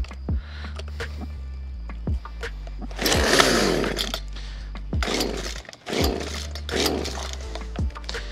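Old Poulan 2150 two-stroke gas chainsaw being pull-started on choke: several yanks of the starter cord, the engine coughing into life for a moment a few times, the longest about three seconds in, and dying again each time. The old saw is hard to start.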